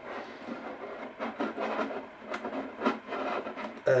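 Thin clear plastic pop bottle rubbing and crinkling against a balsa wood plug as the plug is slid into it: an uneven scraping rustle with a few light clicks.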